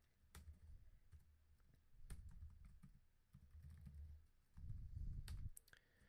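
Faint computer keyboard keystrokes, scattered single clicks a second or so apart, as text is edited in a code editor, over a low, dull rumble.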